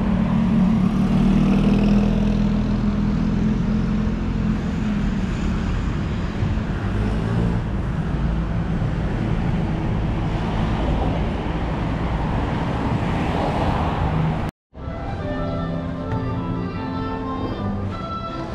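Urban street traffic: motor vehicles running and passing on a road. About three-quarters of the way through, the sound cuts off abruptly and gives way to music with sustained notes.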